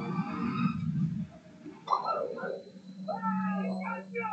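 Film trailer soundtrack playing: a deep rumble of score in the first second, then a voice speaking from about two seconds in, over a low steady hum.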